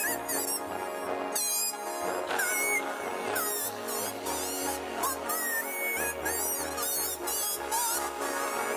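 A wind instrument plays a lead melody with sliding, bending notes over a backing track with a steady electronic beat and bass.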